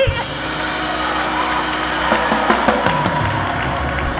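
Live church music with a steady low bass continuing under noise from the congregation, just after a singer's long held note has ended.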